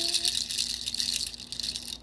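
A handheld rattle of dried pods shaken in a steady rhythm, getting quieter toward the end.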